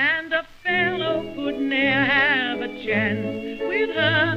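A music-hall song from a 1932 recording: a woman's voice holds long notes with a wide, fast vibrato over a small band accompaniment, phrase after phrase with short breaths between. The sound has the narrow, top-less range of an early record.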